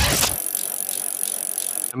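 Fast ticking of a bicycle freewheel over a steady hiss, a coasting sound effect; a deep music bass cuts off about half a second in.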